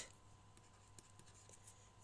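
Near silence: faint room hum with a few soft ticks of a stylus writing on a tablet.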